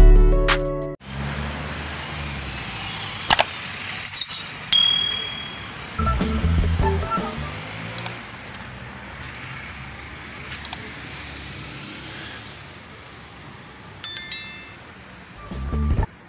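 Guitar music that cuts off about a second in, then the steady hiss of road traffic with a car passing close by a few seconds later. A few faint clicks and short chirps, and a brief chime-like jingle near the end.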